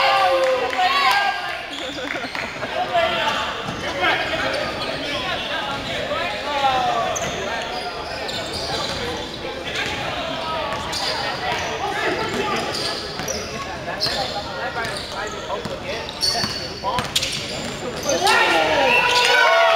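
A basketball bouncing on a hardwood gym floor, under players' indistinct shouts and chatter in a large, echoing gym.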